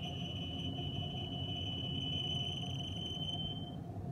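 Metal lathe cutting a steel workpiece: a steady high-pitched whine over the machine's low running rumble, the whine dying away just before the end.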